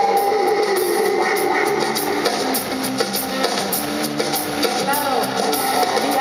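Live rock band: an electric guitar solo over drums, with a sustained note bent downward in pitch in the first second, then held notes.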